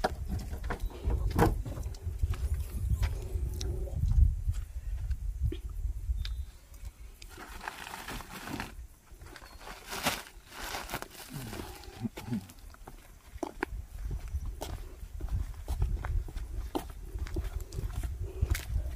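Handling noises as a car's rear hatch is opened and a plastic-wrapped food basket is lifted out and carried: scattered knocks, clicks and plastic rustling, with a low rumble over the first few seconds.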